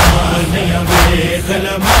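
Backing voices chanting a low, held line of a noha, with a heavy beat about once a second, three beats in all, keeping the lament's rhythm.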